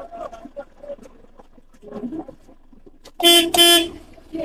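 A vehicle horn honks twice in quick succession near the end, two short loud blasts on one steady pitch. Faint voices of a street argument come before it.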